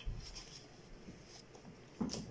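Faint light clicks and rustles of small objects being handled, over quiet room tone.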